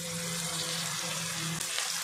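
Shallots, tomatoes and whole spices sizzling steadily in hot oil in a stainless steel kadai.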